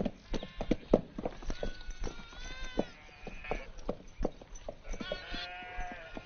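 Sheep bleating, with scattered sharp clicks and knocks throughout.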